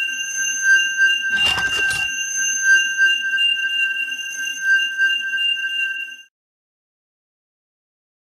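Electronic sound effect for the diamond unlocking the door: a steady high-pitched tone held for about six seconds, with a brief rush of noise about a second and a half in. It then cuts off suddenly.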